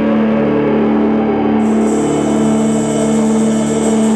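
Heavy metal music with a distorted guitar chord held and ringing steadily. Cymbals come in about one and a half seconds in.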